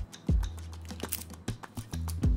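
Several light clicks and taps of a steel watch and its bracelet being picked up off a car battery's plastic lid. A deep bass-drum beat from background music sounds near the start.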